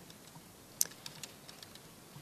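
Faint, scattered key clicks of typing on a computer keyboard, irregular, with one louder click a little under a second in.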